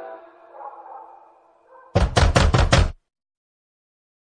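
The song's last sustained tones fade away, then a quick run of about five loud knocks comes at the very end of the track and cuts off abruptly.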